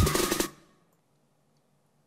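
Playback of a loop-built song with a drum beat stopping about half a second in: a last drum hit rings out and fades, then silence.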